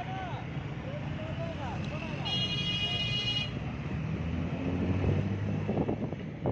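Busy road traffic heard from a moving vehicle: a steady low engine rumble, with voices calling in the first two seconds. A high-pitched vehicle horn sounds for about a second, a little past two seconds in.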